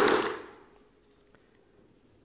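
Near silence: the last of a man's speech fades out in the first half second, then only faint room tone.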